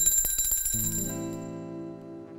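Altar bells shaken in a quick burst of strokes and ringing out, dying away over about a second and a half, marking the consecration of the wine at the elevation of the chalice. A sustained instrumental chord comes in under the ringing after about half a second.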